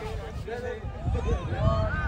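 Voices of players and onlookers calling out across an open-air futsal pitch, over a steady low rumble.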